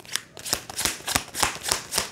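Tarot deck shuffled by hand: a quick, even run of card-on-card strokes, about four a second.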